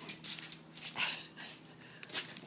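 A Tibetan mastiff close up, with a short dog sound about a second in, among light clicks and rustling.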